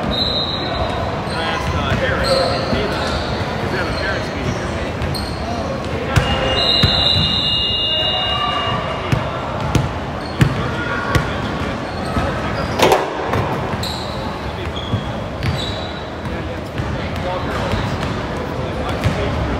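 Basketball game in a large echoing gym: a basketball bouncing on the hardwood floor now and then, a few short high sneaker squeaks, and voices of players and onlookers throughout.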